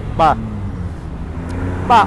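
A car engine idling, a steady low hum, with a man's voice briefly near the start and again at the end.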